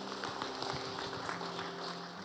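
A congregation clapping, with a held keyboard chord sounding underneath.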